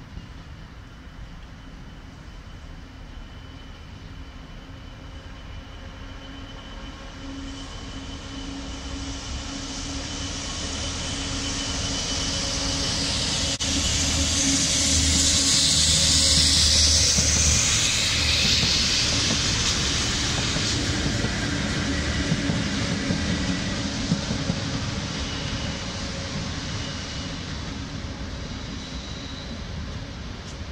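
Class 66 diesel-electric locomotive, its two-stroke V12 engine running steadily as it hauls a rail head treatment train past. The sound swells to its loudest about halfway through, with a strong hiss at its closest, then fades as it moves away.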